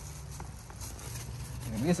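Faint rustling and a few light clicks of plastic packaging being handled as a dashcam unit is wrapped back up, over a low steady hum. A man's voice starts near the end.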